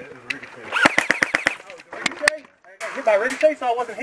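Airsoft rifle firing a quick burst of about six shots about a second in, then two more single shots around two seconds.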